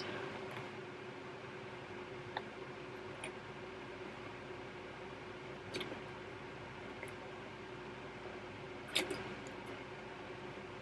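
Soft handling of plastic sewing clips on layered fabric: a few faint clicks as clips are pushed onto the fabric edge, the loudest near the end, over a faint steady hum.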